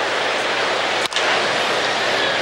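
Steady ballpark crowd noise, with one sharp click about a second in.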